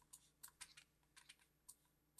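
A run of faint, irregular clicks from a computer keyboard or mouse being worked, about a dozen in two seconds, over near silence.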